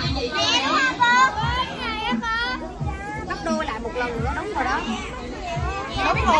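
A crowd of children talking, calling out and chattering all at once, with many high voices overlapping.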